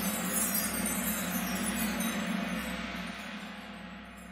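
The song's final chord ringing out on chime-like bell tones and fading away steadily.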